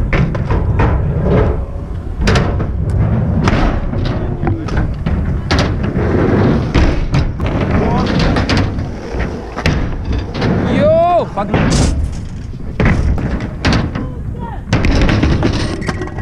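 Trick scooter riding on skatepark concrete: a steady rolling rumble with wind on the microphone, broken by many sharp knocks and clatters of the scooter's deck and wheels hitting ramps and ground. A short pitched shout about eleven seconds in, and a clatter as the scooter is dropped or crashes onto the concrete near the end.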